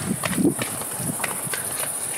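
Quick running footsteps on a paved garden path: a patter of short, uneven steps, several a second.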